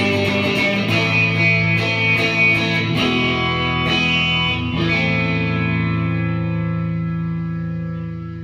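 Homemade hollowbody electric guitar being strummed in chords; about five seconds in a final chord is struck and left to ring out, slowly fading.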